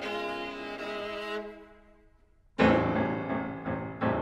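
Chamber music for clarinet, violin, cello and piano. A held string chord dies away to near silence about two seconds in. Then, at about two and a half seconds, a sudden very loud piano attack with deep bass notes opens a fast tarantella.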